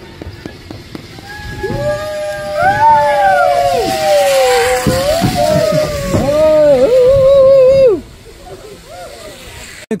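Several people whooping and cheering in long held, overlapping calls at different pitches, one wavering near the end, with a hiss under them in the middle. The calls stop about eight seconds in.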